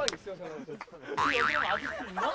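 Cartoon-style comic sound effect: a warbling tone that wobbles rapidly up and down in pitch, starting just over a second in, laid over men's talk and chuckles.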